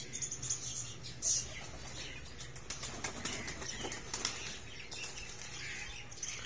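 Domestic pigeons' wings flapping, with a quick flurry of wing claps in the middle, over a steady low hum.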